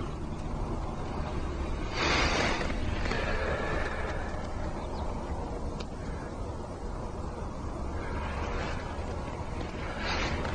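Outdoor background noise on a fishing boat on a lake: a steady low rumble, with brief rushes of hiss about two seconds in and again near the end.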